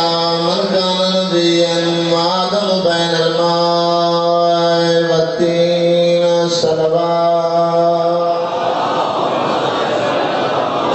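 A man's voice chanting in long, held notes, the melodic recitation of a majlis zakir at a microphone. About eight and a half seconds in, the chanting stops and crowd noise takes over.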